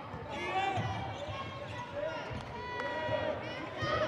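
A basketball being dribbled on a hardwood court, its bounces coming as repeated low thumps, with faint voices in the background.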